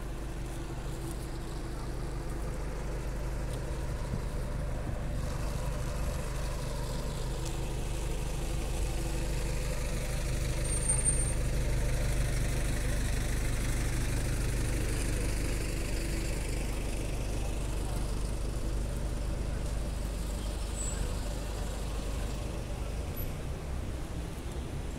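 A large vehicle's engine running steadily, a low hum that grows louder toward the middle and eases off again, with a brief high squeak near the middle.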